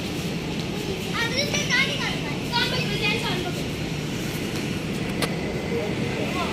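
Children's voices calling out twice, high and brief, over a steady low background rumble.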